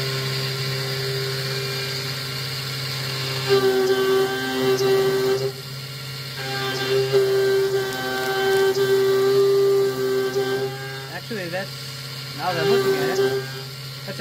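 Small CNC milling machine (Taig mill with a BT-30 spindle and 1,200 W motor) cutting metal with a half-inch three-flute end mill at about 7,800 rpm. It is taking adaptive-clearing passes 2.5 mm deep at about 39 inches a minute. The steady cutting tone swells in two long stretches as the cutter loads up in the material, then eases.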